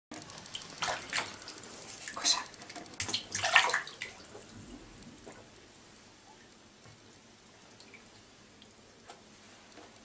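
Water splashing in a bathtub as a cat swims in it: a run of splashes over the first four seconds, then only faint water and room sound.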